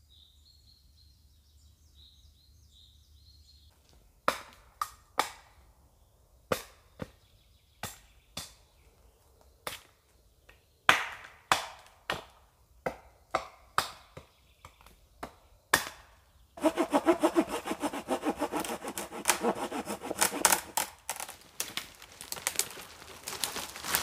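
Dry dead pine wood being handled: a series of sharp, irregular cracks and knocks, then several seconds of dense crackling and snapping as dry branches break and drag through the brush.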